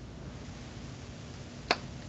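A pause in the conversation: faint steady background hiss, with a single short sharp click near the end.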